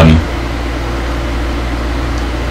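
Steady low hum with an even fan-like hiss from workbench electrical equipment, unchanging throughout.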